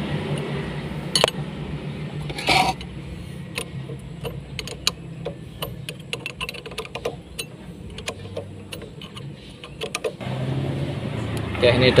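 Small metallic clicks and taps of an L-shaped wrench working the bleeder nipple on a motorcycle disc-brake caliper as it is tightened, with a louder clink about a second in. A low steady hum lies underneath.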